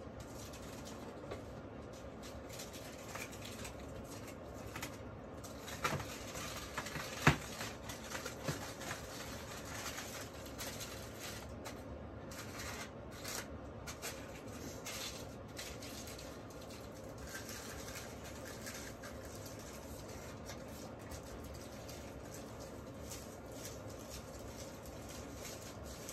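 Faint rustling and light clicks of small items handled on a tabletop, with a sharper click about seven seconds in, over a steady low hiss.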